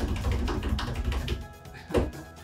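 A drumroll of rapid taps and ticks with music behind it, played while the prize wheel spins. The low rumble drops away a little over halfway through and the ticks go on, ending in one sharp knock.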